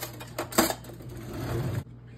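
Plastic mixing bowl and spatula being handled on a kitchen counter: a few knocks, the loudest just over half a second in, then about a second of scraping that stops sharply near the end.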